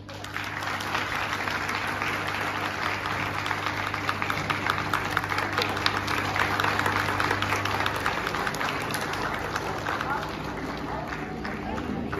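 Audience applauding in a hall. The clapping starts suddenly and runs on steadily, thinning a little near the end.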